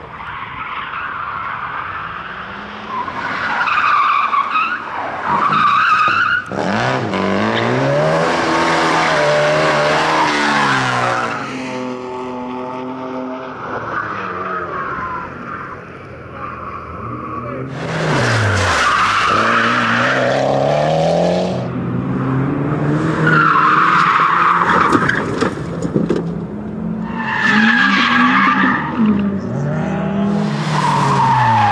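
Several rally cars in turn being driven hard around a tight tarmac course, engines revving up and dropping back through gear changes, with repeated bouts of tyre squeal as the cars slide through the corners.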